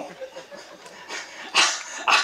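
A man at a microphone lets out one short, sharp laugh about one and a half seconds in, after a brief quiet pause.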